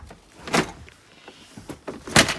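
Things being handled in a cupboard: a short rustling scrape about half a second in, then a few light clicks.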